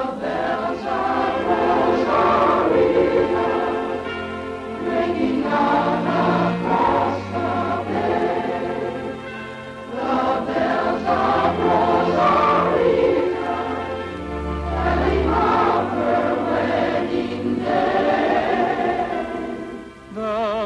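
A chorus singing a song with instrumental accompaniment, under sustained low bass notes.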